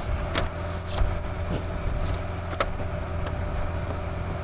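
A car engine idling steadily with a low hum, with a few light taps as a paper L-plate is pressed onto the car's bonnet.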